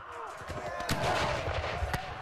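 Musket fire in a reenacted battle: scattered shots over a continuous din, the two sharpest about a second in and just before the end.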